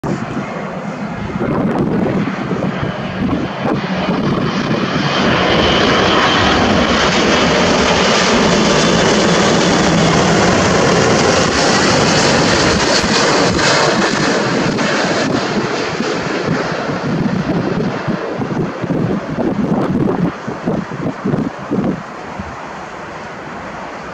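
Boeing 777-200ER's twin GE90 turbofan engines on final approach. The jet's rush builds as it comes in, is loudest and steady as it passes by about six seconds in, then slowly fades as it descends to the runway.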